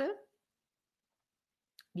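A woman's voice finishing a word, then over a second of dead silence, broken near the end by a single brief mouth click just before she speaks again.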